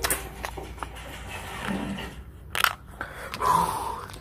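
Handling noise of a phone moving against clothing: rustling with scattered small clicks and knocks, and a short burst of noise about two and a half seconds in.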